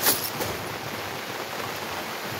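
One sharp click at the very start as a hand works the rifle bipod, followed by a steady hiss of rain.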